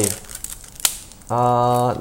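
A man's voice holding a long, level 'ah'. Before it comes a brief lull with a single sharp click just before the middle.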